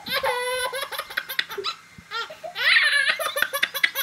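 A baby laughing in a string of short, high-pitched bursts, loudest about three seconds in.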